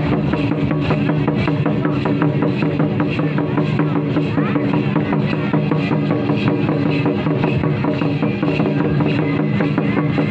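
Santhali folk drums, a tamak' kettle drum beaten with sticks and tumdak' barrel drums, played together in a fast, dense, unbroken rhythm for the dance. A steady low held tone runs underneath.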